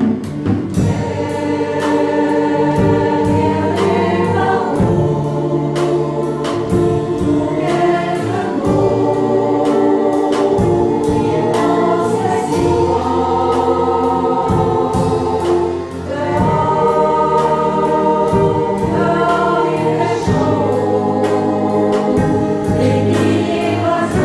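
Mixed choir of women's and men's voices singing a piece in sustained harmony, held chords moving from one to the next, with a steady beat of short sharp strikes under the singing. The music drops briefly about two-thirds of the way through, then picks up again.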